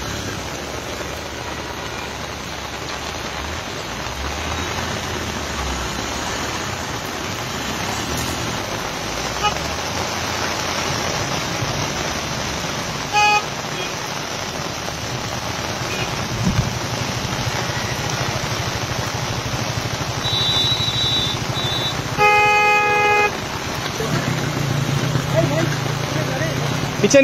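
Heavy rain pouring steadily over a waterlogged road, with vehicle traffic. Car horns sound a short toot about halfway through, then a brief high beep and a longer honk of about a second near the end.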